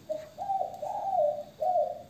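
Dove cooing: a run of clear pitched notes that step up and then fall back, with a short break about one and a half seconds in.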